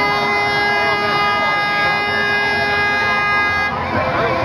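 A horn sounding one long, steady note that cuts off just before the end, over the noise of a crowd.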